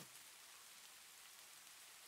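Near silence: only a faint, steady hiss of the recording's noise floor.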